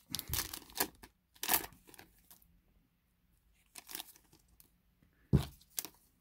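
Foil trading-card pack wrapper being torn open and crinkled by hand, in short separate bursts of tearing and rustling. The loudest, sharpest burst comes near the end.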